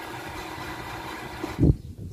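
Steady hum of running machinery, with a short, loud thump about a second and a half in.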